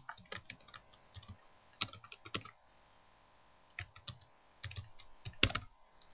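Typing on a computer keyboard: a short word keyed in a few quick clusters of clicks, with a pause of about a second in the middle and a few sharper clicks near the end.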